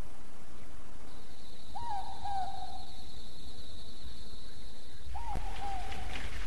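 Night ambience: an owl hooting twice, about three seconds apart, each call a short note that rises quickly then falls away, over a steady high-pitched trill and a low background rumble.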